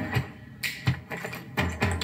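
A handful of short, sharp taps or clicks, about five spread across two seconds, with faint music underneath.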